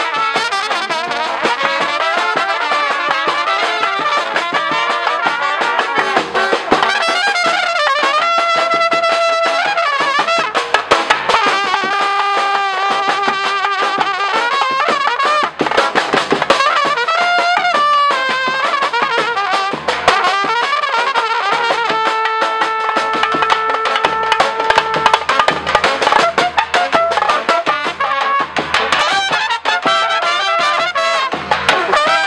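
Live brass band music: trumpets play a melody with several long held notes over a steady snare drum and cymbal beat.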